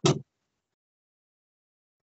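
The end of a spoken word in the first quarter-second, then silence.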